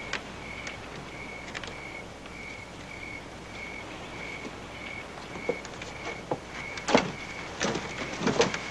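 Footsteps of people walking on a dirt street, a few scattered scuffs and knocks with a sharper one near the end. Behind them a short high chirp repeats steadily about twice a second.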